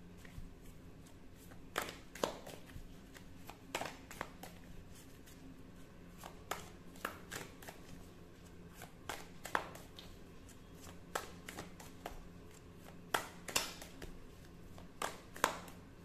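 A deck of tarot cards being shuffled by hand: sharp card slaps and clicks, often in pairs, coming every second or two.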